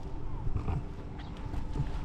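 Brown-and-white cat purring steadily while being stroked.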